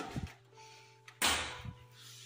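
Door of a Speed Queen commercial laundry dryer being opened, with a sharp knock at the start, then a louder clunk a little over a second in as the door swings open.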